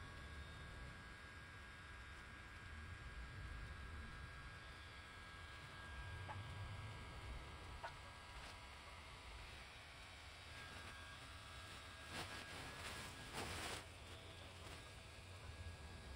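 Faint steady hum of the inflatable Santa's built-in electric blower fan filling it with air, with a few soft rustles of the fabric as it unfolds and stands up, the clearest near the end.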